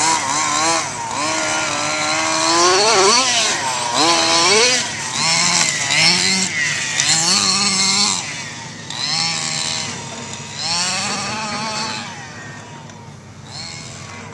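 Small two-stroke petrol engine of an HPI Baja 5T 1/5-scale RC truck revving up and down again and again as it is driven, its pitch rising and falling with the throttle. It grows quieter over the last couple of seconds.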